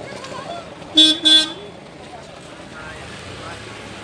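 Vehicle horn giving two quick short toots about a second in, over street noise and faint voices.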